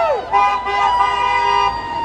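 A vehicle horn held in one long, steady blast that fades out near the end, over a low traffic rumble.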